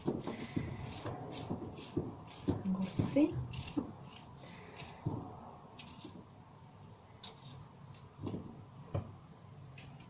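Kitchen knife slicing vegetables into half-rings on a cutting board: quick taps about three a second for the first few seconds, then sparser single cuts. A brief murmur of a voice comes about three seconds in.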